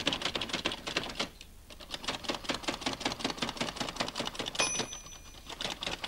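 Braille writer being typed on: rapid mechanical key strikes, roughly eight a second, with a brief pause just after a second in. About three-quarters of the way through a short bell rings, the machine's end-of-line bell.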